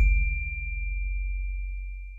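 A single high, bell-like ding from the logo sting, held on one pure tone over a low bass note. Both ring out and fade near the end.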